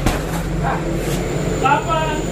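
Kicks landing on hanging heavy punching bags: a hard thud right at the start, then lighter knocks, over short vocal snatches and a steady low hum.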